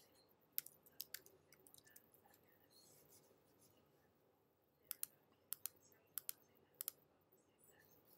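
Quiet clicks of a computer mouse: a few single clicks in the first second and a half, then four quick pairs of clicks about five to seven seconds in.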